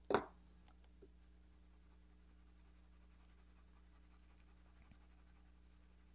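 Faint scratching of an HB (No. 2) graphite pencil shading on sketchbook paper, under a low steady electrical hum. A short, louder sound comes right at the start.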